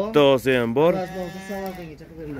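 Hissar sheep bleating: a few short wavering calls, then one long steady bleat of about a second.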